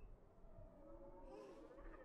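Near silence, with faint distant creature growls rising and falling.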